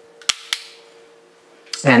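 Two sharp clicks about a quarter of a second apart, from a hand working something at a bathroom door frame, such as a light switch or door fitting, in a small room.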